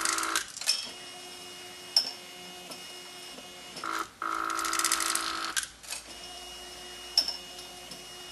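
Kraemer UTS tablet testing machine's transport mechanism running: a motor whine at the start and again for about a second and a half midway, with single sharp clicks between and a faint steady hum underneath.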